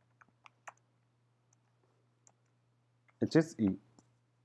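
Computer keyboard keystrokes: three faint clicks within the first second, then a couple of fainter ones, with a short spoken phrase near the end.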